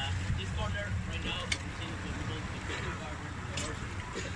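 Small tour boat's engine running slowly with a steady low rumble, water sloshing against the hull, and a few brief faint calls or voices over it.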